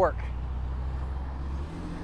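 A van passing close alongside, a steady low engine and road rumble that cuts off shortly before the end as it pulls ahead.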